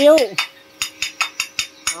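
Rapid, evenly spaced light metallic ticking, about six ticks a second, over a faint steady hum.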